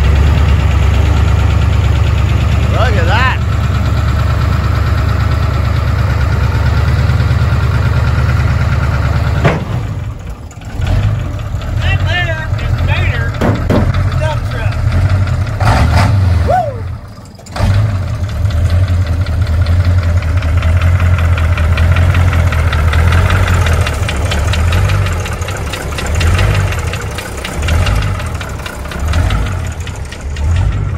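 The engine of a circa-1982 dump truck idling with a steady low rumble. It dips briefly twice, about a third of the way in and again a little past halfway.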